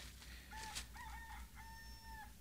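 A rooster crowing once, faint, ending on a long held note: a sound effect marking daybreak.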